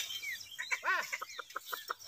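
A chicken clucking: a quick run of short clucks starting a little under a second in.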